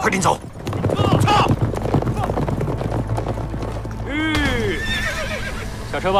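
Horses' hooves clip-clopping as a horse-drawn carriage moves along, with a horse whinnying about four seconds in.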